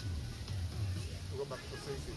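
Faint voices in the background, heard mostly in the second half, over a steady low rumble.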